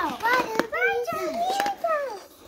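A young child's high voice talking in a sing-song way, pitch sliding up and down, with no clear words.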